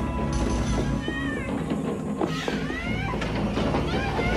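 Horror-film soundtrack: a loud, dense low drone with eerie wailing cries that glide in pitch, once about a second in and again midway through.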